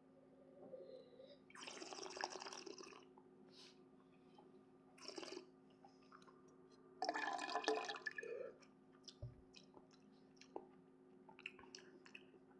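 Quiet wet slurping of red wine in the mouth, air drawn through the wine as it is tasted: two slurps about a second long with a shorter one between, and small liquid clicks.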